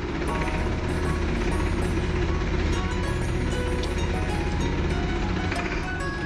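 Tractor diesel engine running steadily, with background music over it.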